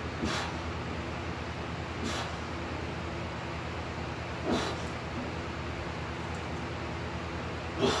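A man breathing hard and straining while grinding out a heavy barbell bench press rep at 205 lb: four sharp, forceful breaths about two seconds apart. The last and loudest turns into a grunt.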